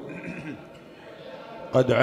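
A short pause in a man's speech with only faint room noise, then his voice starts again near the end.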